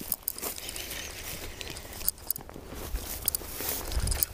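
Footsteps and rustling through dry reeds and grass at the water's edge, with scattered light clicks and knocks.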